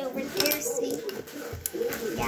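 Markers and pencils clattering and clicking against one another and the tabletop, with a few sharp knocks, the clearest about one and a half seconds in.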